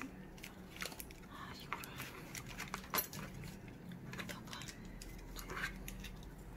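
Faint clicks and light scraping of food being handled: a bun, cabbage slaw and a plastic spoon spreading jam on the bread.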